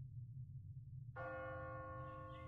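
A single bell strike about a second in, ringing on with a sustained tone over a low, steady rumbling drone.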